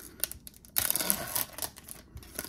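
Foil wrapper of a baseball card pack being torn open by hand. A few small clicks come first, then about a second of dense crackling as the foil rips.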